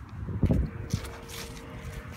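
Wind and handling noise on a phone's microphone as the phone is swung about: low rumbling thumps, the loudest about half a second in and a smaller one about a second in.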